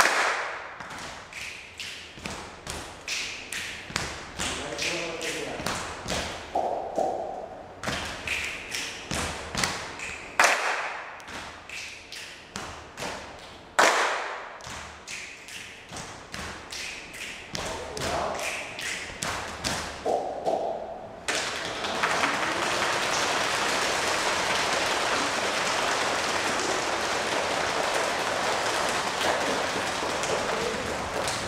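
A group of people doing body percussion: hand claps and chest slaps in a steady rhythm, with a few short vocal sounds mixed in and a couple of louder strikes. About two-thirds of the way through, the rhythm gives way abruptly to a steady wash of noise.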